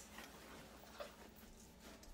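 Near silence: faint handling of a cloth straining bag, with one small soft sound about a second in.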